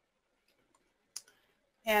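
A single sharp click about a second in, with a faint second tick just after, against an otherwise quiet background; a woman's voice starts right at the end.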